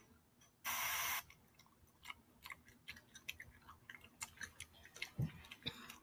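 Gum being chewed loudly with the mouth open: a run of quick, irregular wet smacks and clicks, too loud for the person sitting next to it. About a second in there is a brief burst of hiss before the chewing starts.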